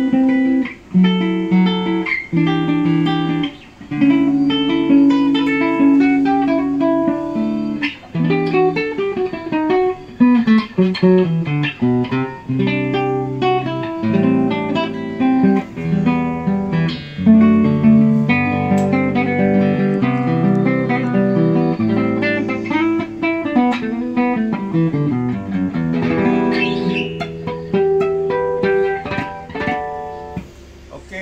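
Nylon-string cutaway classical guitar from WE Guitars played fingerstyle: picked chords and melody with falling runs of notes, about 10 seconds in and again about 24 seconds in.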